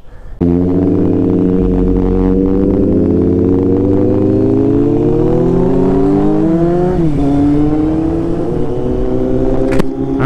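Kawasaki Z800 inline-four motorcycle engine running under way, heard from the rider's seat. It comes in abruptly about half a second in and its note climbs slowly for about six seconds. Around seven seconds in the pitch drops sharply with a gear change, and then it runs fairly steady.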